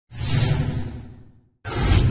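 Two whoosh sound effects from an animated intro graphic: the first swells and fades away over about a second and a half, and the second swells up loud near the end and then cuts off.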